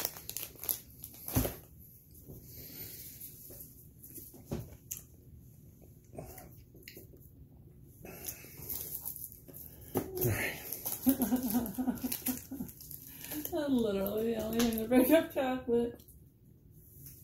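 Plastic snack wrappers crinkling and rustling in short crackles as a packet is handled, with a voice heard in the last few seconds.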